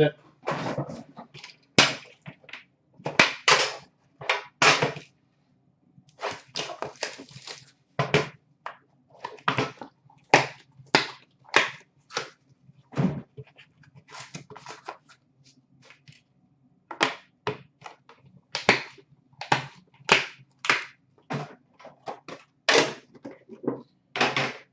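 Hands opening and handling a metal trading-card tin and the cards and packaging inside: a run of irregular sharp clicks and taps, one to three a second, over a faint steady low hum.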